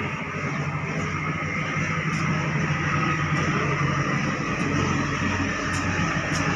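Steady low rumble of the docked OceanJet 5 fast ferry's engines running while the vessel pours out thick black smoke.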